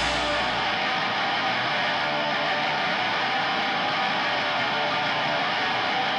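A break in a grindcore song: a distorted electric guitar sounds on its own, steady and without drums. The deep bass fades away in the first second.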